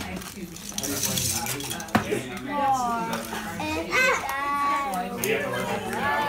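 Small plastic LEGO bricks clattering and clicking as a child's hands rummage through a plastic bag full of them, with one sharp click about two seconds in.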